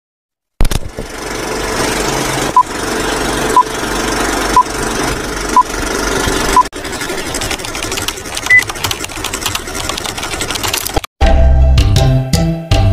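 Film-countdown leader sound effect: the steady clatter of an old film projector with a short beep once a second, five times. Then comes the crackle and clicks of worn film with one higher blip. About eleven seconds in it cuts off and music starts.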